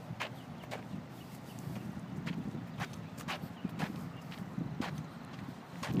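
Footsteps on pavement, short sharp clicks roughly every half second, over a low steady outdoor rumble.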